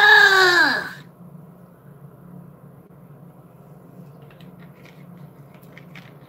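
A woman's loud, drawn-out exclamation, falling in pitch over about the first second, then only faint room noise with a few soft clicks near the end.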